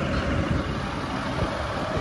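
Motorcycle engine running while the bike rides along a road, a steady low rumble.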